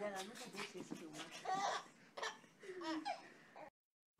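A baby laughing and babbling in several short bursts, her voice bending up and down in pitch. The sound cuts off suddenly near the end.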